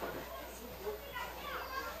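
Faint background chatter of people in the room over a low, steady electrical hum.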